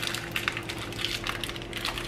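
Liquid bubbling in pots on a gas stove, pasta water at the boil and sauce simmering under a lid, as an irregular fine crackle over a steady low hum.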